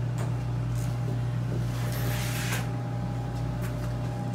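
Steady low hum of a boat's onboard machinery, heard in a small cabin room. A brief hiss comes about halfway through, along with a few light clicks.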